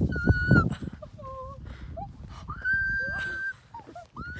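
High-pitched, drawn-out vocal calls from young women's voices: one long call held on a single note at the start, a shorter sliding cry about a second in, and a second long call held for nearly a second about three seconds in.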